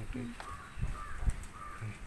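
A crow cawing three short times.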